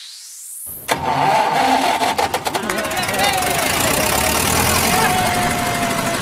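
A rising whoosh sweep builds through the first second and ends in a sharp hit. It cuts into a dense, noisy bed of film-clip audio with voices, the intro of a DJ remix.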